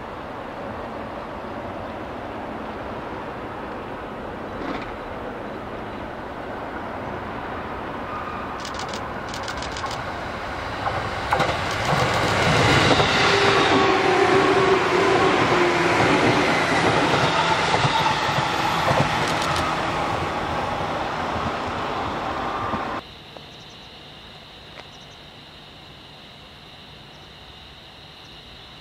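JR East 211 series electric multiple unit approaching and passing at speed: the rumble builds, then rattling wheel clatter over the rails and a whine falling in pitch are loudest in the middle. The sound cuts off abruptly near the end.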